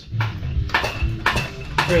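Transmission jack being worked, giving a few metal clanks and knocks about two a second.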